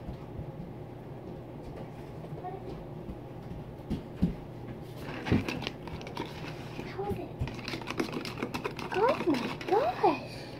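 Metal spoon stirring a thick paste of baking soda and canola oil in a glass jar, with irregular clinks and knocks of the spoon against the glass and a scraping patch from about halfway.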